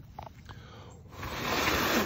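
A person blowing a steady puff of air onto spittlebug froth on a plant stem, a breathy rush that starts about halfway through and lasts about a second.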